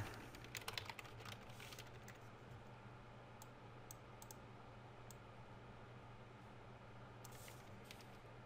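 Faint computer keyboard typing: a quick run of keystrokes in the first two seconds, then a few scattered key presses, over a steady low hum.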